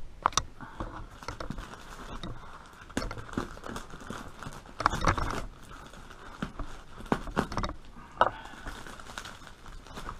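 Plastic film and brown packing tape around a parcel crinkling and tearing as it is pulled open by hand, with irregular rustles and scattered small knocks.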